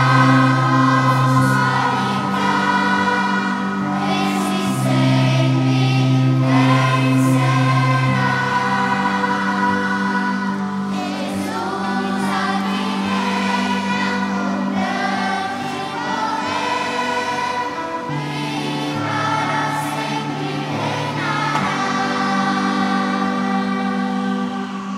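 Children's and youth choir singing a hymn in several voices over instrumental accompaniment that holds long, sustained low notes.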